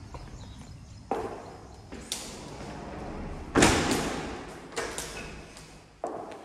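Footsteps and a door being shut in an empty tiled room: five or so knocks and thuds that echo, the loudest about three and a half seconds in.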